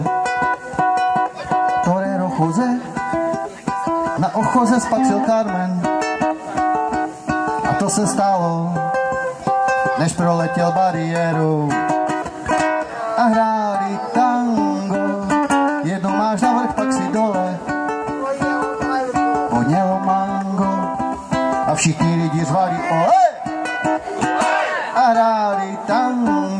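Live solo music: a man singing to his own strummed small acoustic string instrument, a lively song played without a break.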